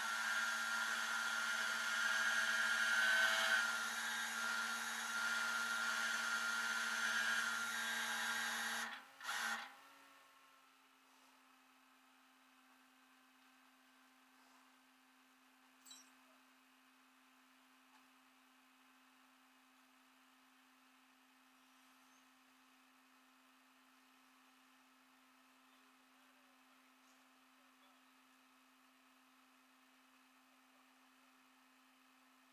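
Rollback tow truck's engine and bed hydraulics running steadily with a low hum and a whine, cutting off abruptly about nine seconds in; afterwards only a faint steady hum is left.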